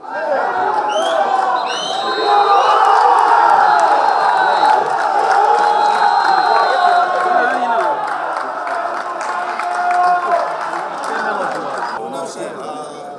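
A crowd of men shouting and cheering in celebration, many voices overlapping, with a few high piercing notes held over the din in the first half.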